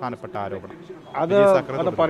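Men's voices speaking in short phrases. About a second in comes a louder, drawn-out call that rises and falls in pitch.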